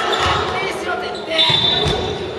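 Basketball bouncing on a hardwood gym floor, with a low thud just before the end, under players' voices in the hall.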